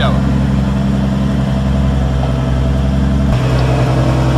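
An engine idling steadily, a constant low hum, whose tone shifts slightly near the end.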